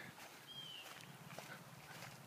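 Near silence, with a single faint, short high chirp from a bird about half a second in.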